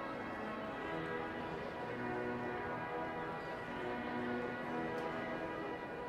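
Wanamaker Organ, a large pipe organ, playing sustained chords with a moving line of notes that changes about every half second to a second.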